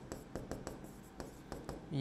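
A stylus tapping and scratching on the glass of an interactive touchscreen board as letters are written by hand: a quick, uneven series of light clicks.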